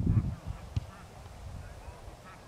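Faint shouts carrying across a Gaelic football pitch, with a single thud about three-quarters of a second in.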